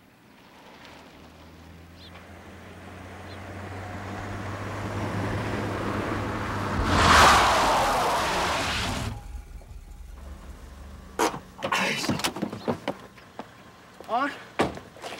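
A car's engine approaches, growing steadily louder. About seven seconds in comes a hard stop with a loud skidding screech lasting a couple of seconds. Near the end there are a few sharp clicks and knocks, like a car door opening.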